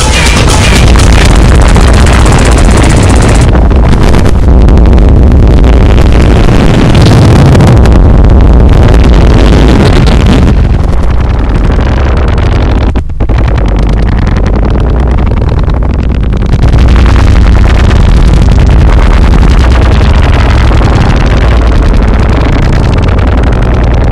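Analogue noise music: a loud, dense wall of distorted noise over a heavy low rumble. Its highest hiss falls away a little before the middle, with a momentary drop-out just after.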